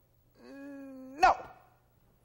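A man's long drawn-out "nooo", held on one steady pitch for nearly a second, then rising sharply into a short loud peak with a sharp click.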